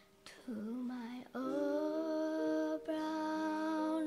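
Children's choir singing a slow song with piano accompaniment: the voices come in just after the start, slide into pitch, and settle on long held notes about a second and a half in.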